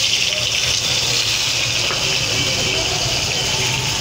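Cut potato and raw green banana pieces dropped into hot oil in a kadhai, setting off a steady, high hissing sizzle of deep frying.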